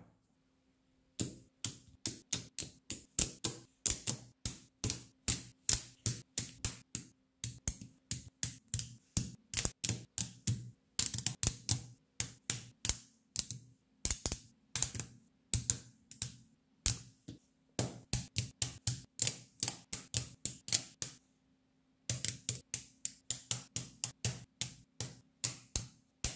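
Magnetic rods snapping onto steel balls, a run of sharp metallic clicks, two to four a second, as a stick-and-ball magnet cube is assembled, with a short pause near the end.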